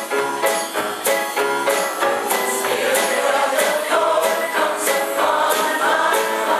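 Mixed choir singing an upbeat song with a live band of piano, guitar and drums, the percussion keeping a steady beat.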